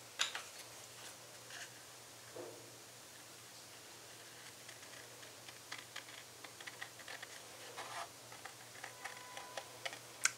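Faint scissors snipping through a cardstock card, a run of small clicks mostly in the second half.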